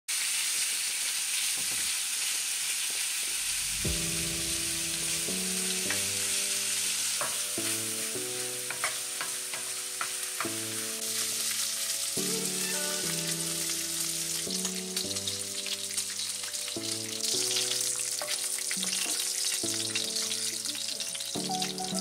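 Sliced pork belly sizzling steadily as it fries in a pan and its fat renders, with a wooden spatula stirring and scraping it in short clicks.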